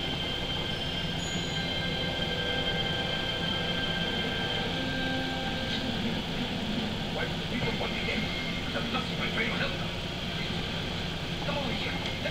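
Steady background hum with several thin, high whining tones through the first half, and faint voices in the second half.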